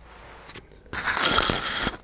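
Loud rustling and scraping right against the microphone for about a second, starting about a second in, with small clicks in it. It is handling noise from something brushing or knocking the camera.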